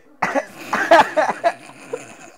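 A man's burst of laughter, breathy and pulsing, loudest about a second in and then trailing off.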